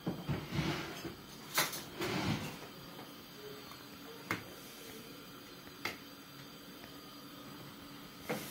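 Kitchen utensils being handled while salt is added to a cooking pot: a few short sharp clicks and knocks, with brief rustling in the first two and a half seconds.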